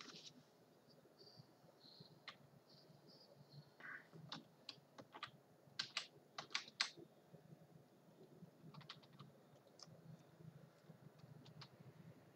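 Faint, scattered clicks of computer keyboard keys, with a quick run of several clicks about six seconds in.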